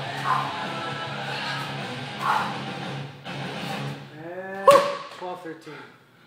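Background music fading out, then, about four and a half seconds in, a single loud thud from a medicine ball hitting the floor, with a short rising-and-falling shout.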